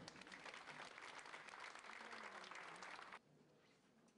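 Audience applauding, a dense patter of many hands, cut off suddenly about three seconds in, leaving faint room tone.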